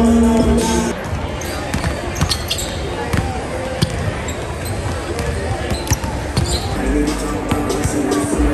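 Basketballs bouncing on a wooden gym floor, many irregular thuds from several balls, over the chatter of a crowd. Background music plays in the first second and comes back near the end.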